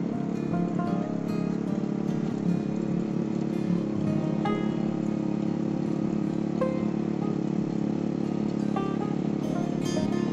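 Small petrol mini tiller engine running steadily under load as it tills hard, dry soil, with plucked-guitar background music over it.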